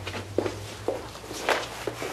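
Footsteps of a person walking away, about four steps roughly half a second apart, over a low steady hum.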